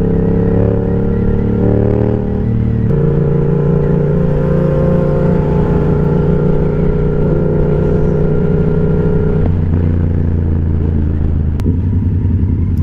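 Motorcycle engine heard from the riding position, running at a steady cruise. Its pitch climbs a little, then drops at a gear change about three seconds in, and shifts again near the end.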